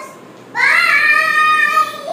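A young girl's voice: one long sung-out call that starts about half a second in, slides up in pitch and is then held.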